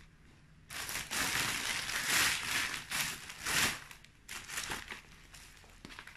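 Rustling and crinkling as garments are handled and unfolded close to the microphone. It starts loud about a second in and runs for about three seconds, then continues as a few softer rustles.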